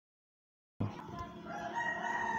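Dead silence for most of the first second while the audio drops out, then a faint, drawn-out call with a steady pitch comes in from the background.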